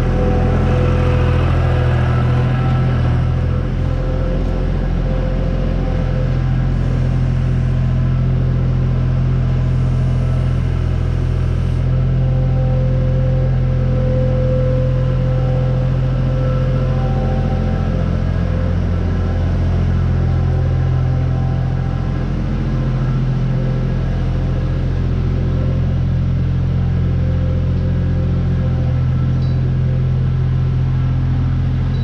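John Deere skid steer loader's diesel engine running steadily as the machine works the barn floor, with small rises and falls in its note as it moves.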